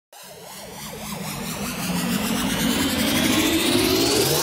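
A synthesized riser sweep, several tones gliding steadily upward in pitch while swelling louder throughout: the build-up of an electronic intro jingle.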